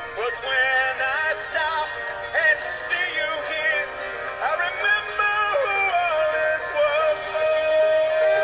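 A song: a singing voice over backing music, sliding between notes with vibrato, then holding one long note near the end.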